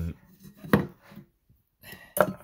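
The end of a hesitant spoken "um", then a single short, sharp breath from the man about three quarters of a second in.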